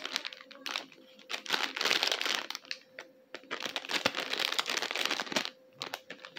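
Packaging being handled and unwrapped by hand, in two spells of dense crackly rustling with a short pause around the middle.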